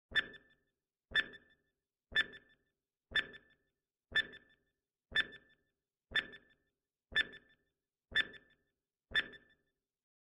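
Countdown timer sound effect: ten short, identical ticks with a brief ring, one each second, in an even rhythm.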